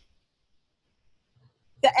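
Near silence: a pause in speech, with a woman's voice starting again near the end.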